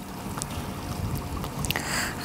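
Low rumbling wind noise on a clip-on microphone, with a few faint clicks from the mic being handled.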